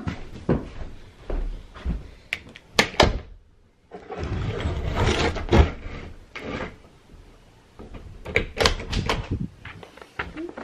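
Wall-to-wall carpet being pulled up and dragged across the floor: scattered knocks and thumps, then a scraping rush lasting about three seconds near the middle, then more knocks.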